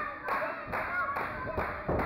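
Audience clapping in a steady rhythm, about two claps a second, with voices calling out over it.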